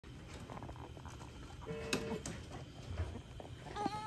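Newborn baby whimpering through a breathing mask: a short high squeak about two seconds in, then a wavering cry that starts near the end.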